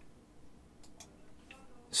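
A few faint, scattered clicks from computer controls being worked.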